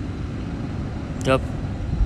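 Steady low background rumble, with a man saying "yep" once about a second in.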